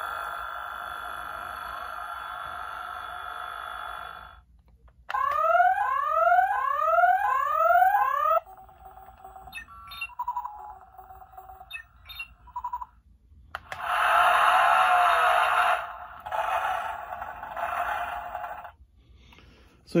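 Spin Master 'The Batman' Batmobile toy playing its electronic sound effects through its small speaker, in the switch position meant for in-store demonstration. A steady engine-like hum comes first, then a run of rising electronic sweeps, then some beeps, and a loud rough engine roar in the last few seconds.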